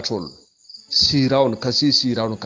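A man talking, with a short pause about half a second in. Behind him a steady, high-pitched, pulsing chirring runs throughout.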